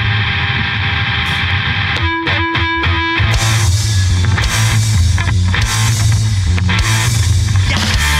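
Live rock band with distorted electric guitar, bass guitar and drum kit playing the opening of a song. A held, ringing chord comes first, then a short break of a few ringing notes and hits about two seconds in. The full band comes in at about three seconds.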